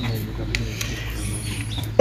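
A pause in the talk filled by a steady low hum and rumble, with a few faint clicks and a brief faint high squeak in the second half.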